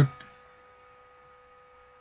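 Near silence after a spoken word ends at the start, with a faint steady electrical hum of a few fixed tones underneath.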